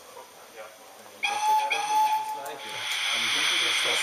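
Sound decoder of an H0 model steam locomotive giving a whistle in two blasts, the second longer, about a second in. A steady steam hiss follows and carries on.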